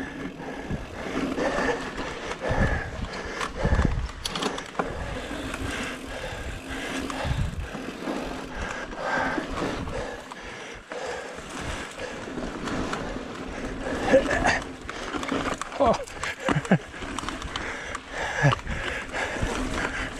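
Jamis Portal mountain bike ridden over rocky singletrack: tyres rolling and crunching over dirt and rock, with frequent knocks and rattles from the bike over the bumps, and wind noise on the microphone.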